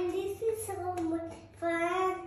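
A young boy singing in long held notes, one phrase dipping away about a second and a half in and the next starting straight after. A single sharp click sounds about halfway through.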